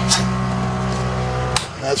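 Ambulance's built-in suction pump running with a steady hum, then switched off with a click about a second and a half in, the hum stopping at once.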